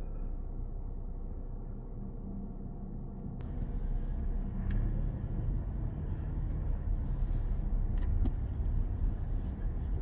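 Car engine idling, heard from inside the cabin while the car waits at a red light. About three seconds in, engine and road noise rise as the car moves off, with a few light clicks.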